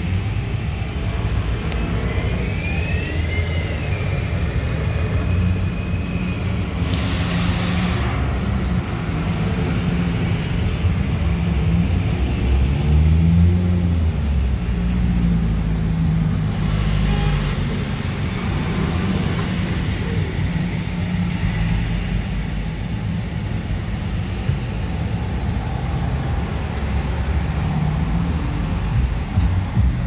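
Steady road traffic on a city street: cars passing with a continuous low rumble, and a brief high squeal a few seconds in.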